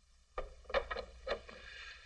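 Four or five sharp knocks or clinks in quick succession, then a brief hiss near the end.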